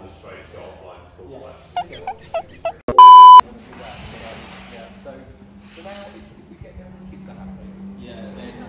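A loud, flat electronic beep about three seconds in, lasting under half a second, preceded by four short chirps. Faint talk before it, and a low steady hum after it.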